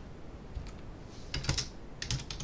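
Computer keyboard being typed on: a single keystroke about two-thirds of a second in, then a quick cluster of several keystrokes about a second and a half in.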